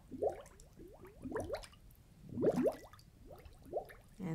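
Water dripping and bubbling: irregular short rising plinks, several a second, with a louder cluster a little past the middle.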